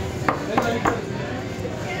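Long machete-like butcher's knife chopping meat on a thick wooden chopping block: a few quick, sharp chops in the first second.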